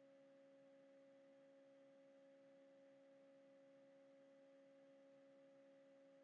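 Near silence, with only a faint steady tone underneath.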